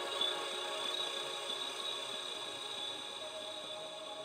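Ambient music of sustained, chord-like tones, slowly fading out.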